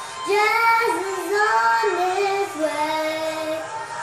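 A young girl singing a melody, holding long notes; about two and a half seconds in, the tune steps down to a lower held note.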